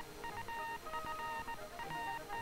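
Short electronic beeps at a few different pitches, keyed on and off in quick irregular pulses: Morse-code (CW) tones from an AN/PRC-64 field radio.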